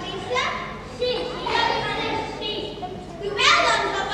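Children's voices speaking lines in a large, echoing hall, with one louder, rising exclamation about three and a half seconds in.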